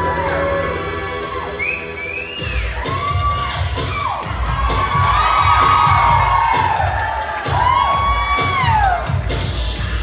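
Upbeat dance music from a stage sound system, with a thumping beat that kicks in about two and a half seconds in, and an audience cheering and whooping over it in a series of rising-and-falling shouts.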